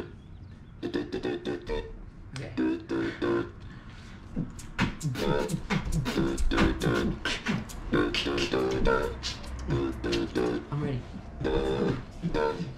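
Beatboxing: mouth percussion of sharp clicks and snare-like hits mixed with a pitched vocal melody. It gets denser, with a low bass line added, about five seconds in.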